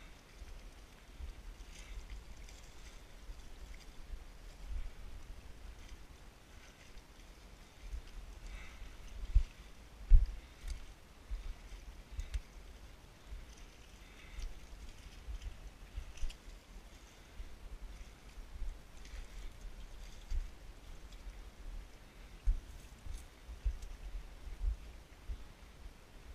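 Wind buffeting the microphone: an uneven low rumble with irregular louder thumps, the strongest about nine and ten seconds in. Under it come faint scuffs and rustles of footsteps on rock and brush.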